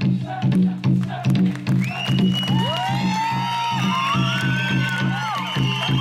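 Hand-played barrel drum beating a steady rhythm for a Siddi dance, about two and a half beats a second. About two seconds in, several high gliding whoops and whistles join over the drumming.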